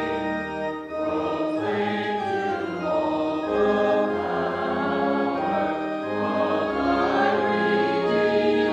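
Congregation singing a hymn together in slow, held notes, over a low sustained bass.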